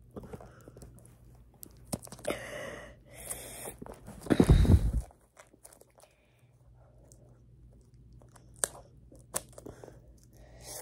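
Packaging being handled and torn open by hand: irregular crinkling, scraping and tearing, with a loud rubbing burst about halfway through and scattered small clicks afterwards.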